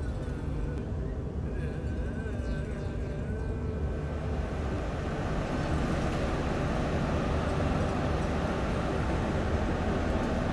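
Steady low drone of large diesel drainage pumps running flat out, with a rushing noise that grows louder about halfway through.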